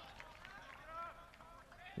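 Faint, distant shouting voices from players and people around a soccer pitch during play.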